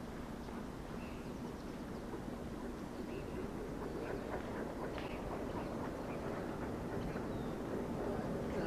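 Open-air ambience: a steady low rumble that slowly grows louder, with a few faint short chirps or calls.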